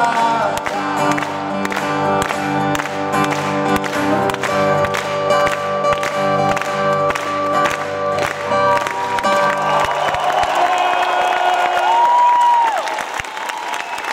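Two acoustic guitars playing the closing strummed chords of a song, which ring out about ten seconds in. The audience applauds and cheers as the song ends.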